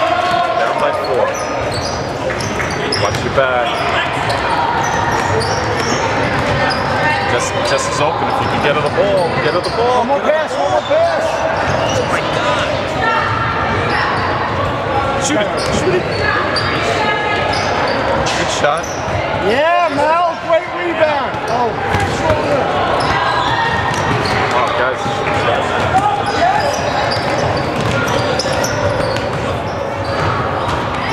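Basketball game sounds in a gym: a ball bouncing on the hardwood court amid a steady hubbub of players' and spectators' voices, echoing in the large hall.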